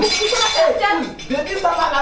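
People's voices speaking, with a clink of dishes in the first half-second.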